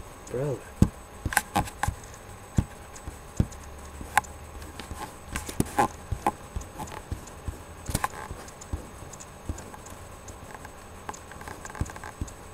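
Irregular light clicks and knocks, coming singly and in small clusters, with a short hummed voice sound about half a second in.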